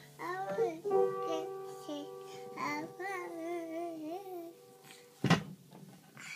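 A toddler singing wordlessly while pressing keys on an upright piano, several notes left ringing under the wavering voice. A loud thump about five seconds in.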